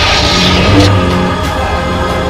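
Dramatic film score over the electric hum of lightsabers, with a sharp blade clash a little under a second in.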